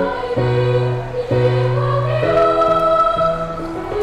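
Children's choir singing a phrase of long held notes over instrumental accompaniment with sustained bass notes. About halfway through, the melody moves higher.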